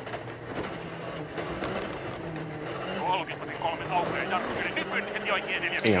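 Onboard sound of a Volkswagen Polo R WRC rally car, its 1.6-litre turbocharged four-cylinder engine running at speed on a gravel stage, with a steady engine note under road noise.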